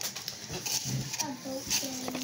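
Quiet voices talking in a small room, with a few light clicks.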